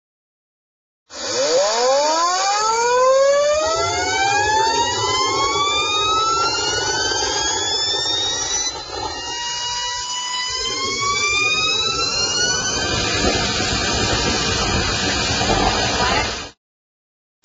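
Homemade jet turbine engine spooling up. A whine starts about a second in and climbs steadily in pitch, levels off briefly about ten seconds in, then climbs again, over a steady rushing roar.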